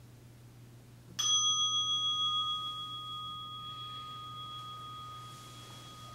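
A meditation bell struck once about a second in, its clear ringing tone holding on and fading slowly, marking the end of the zazen sitting.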